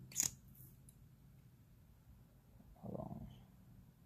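Quiet handling of a liquid lipstick tube and applicator: one sharp click just after the start, then a brief low rumbling sound about three seconds in.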